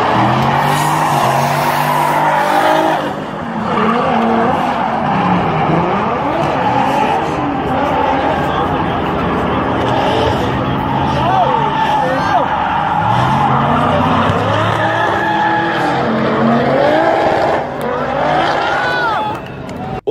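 A Chevrolet Camaro and another car drifting on a track: engines revving up and down again and again under a continuous screech of sliding tyres.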